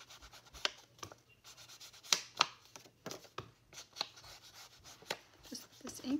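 Foam ink blending tool rubbed and dabbed against the edges of a paper journaling card, a soft scuffing broken by a handful of sharp, irregular taps.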